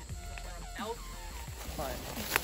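Quiet voices over a low steady rumble.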